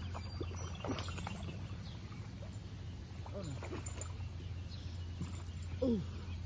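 A hooked fish being pulled out of the pond at the bank: a couple of short splashes in the first second, over a steady low rumble.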